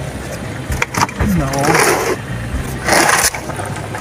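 A suitcase being pushed and slid into a car's boot: two scraping rubs about a second apart, over a steady low rumble.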